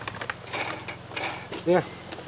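Light rustling and a few soft clicks of a plastic cup being handled over potting mix, followed by a short spoken "yeah" near the end.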